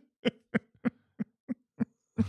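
A man laughing in a run of short, evenly spaced voiced bursts, about three a second.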